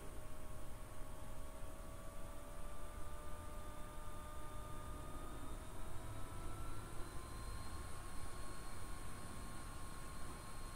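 Quiet background hiss and low hum, with a few faint steady whining tones that drift slowly in pitch.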